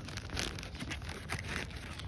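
Close rustling and crackling with many small clicks, as a rubber-gloved hand moves right by the microphone.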